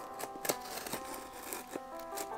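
Quiet background music with a few light clicks and rustles from a boxed Funko Pop figure in its plastic protector being handled.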